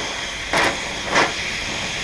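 Oxy-acetylene cutting torch hissing steadily with its oxygen lever pressed, the flame melting the surface of a steel disc blade so that it bubbles up. Two brief crackles come about half a second and a second in.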